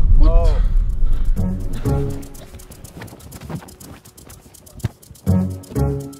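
A loud, deep boom from the film soundtrack under a voice crying out at the start, dying away over about two seconds. Quieter background music follows, with a few short vocal sounds.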